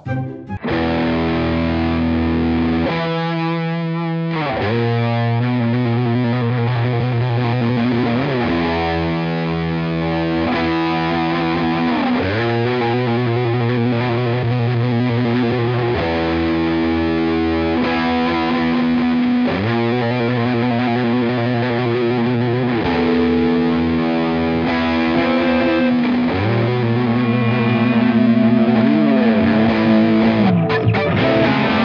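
Two Epiphone Les Paul Traditional Pro II electric guitars jamming through overdriven amps: held distorted chords with a slide down and back up about every four seconds, ending on a long note bent downward.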